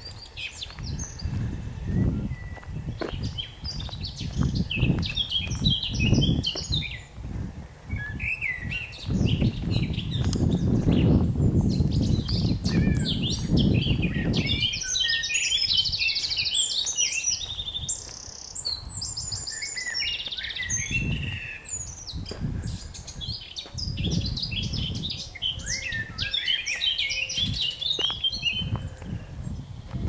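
Footsteps crunching and thudding on a gravel path, loudest in the middle stretch. Songbirds sing throughout in quick chirps and trills.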